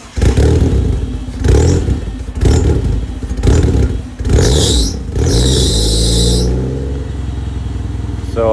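A second-generation Mitsubishi Eclipse's engine starting up and being revved in several blips, with two bursts of hiss in the middle, then settling to a steady idle near the end.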